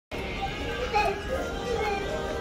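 A young child's voice, without clear words and loudest about a second in, over faint background music.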